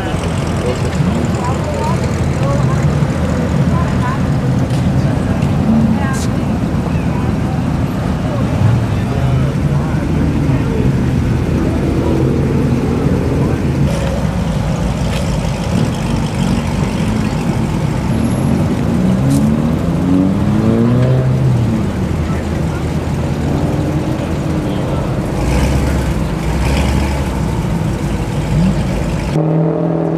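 Chevrolet Corvette C7 Stingray's 6.2-litre V8 running at low speed as the car pulls away, with the revs rising and falling and a climbing rev about two-thirds of the way through. Crowd chatter runs behind it.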